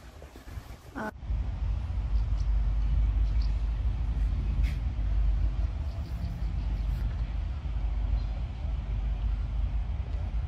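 Wind buffeting the microphone, heard as a loud, uneven low rumble that starts abruptly about a second in.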